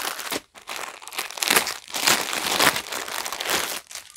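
Clear plastic packet crinkling irregularly as a folded dupatta is unwrapped and pulled out of it, with a brief pause about half a second in.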